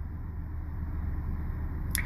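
Steady low background hum with no speech, and a brief click near the end.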